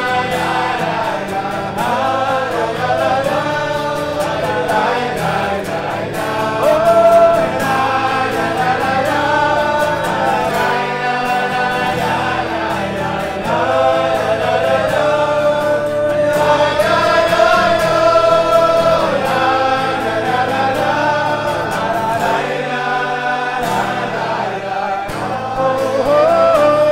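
A group of men singing a Chassidic niggun together in long, flowing phrases, with acoustic guitar accompaniment.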